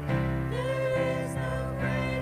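Live worship band: several voices singing a slow melody with long held, wavering notes over sustained keyboard and acoustic guitar chords.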